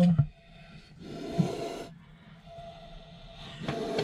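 A single breathy hiss lasting about a second, from a leucistic monocled cobra agitated and raising itself in its container.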